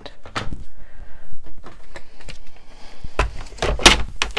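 Small clicks and light handling of paper on a tabletop, then a plastic paper trimmer set down and pushed into place, giving two heavier knocks near the end.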